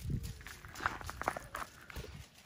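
Irregular light footsteps on gravel and sparse grass, close to the microphone: a walking dog's paws and the steps of the person following it.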